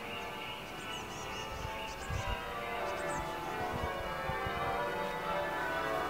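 Bells ringing: a steady wash of overlapping bell tones that grows slowly louder, with a few bird chirps above it.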